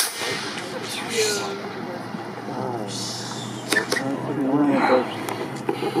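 A model rocket motor's launch rush cutting off right at the start, then onlookers' voices talking with a few faint clicks.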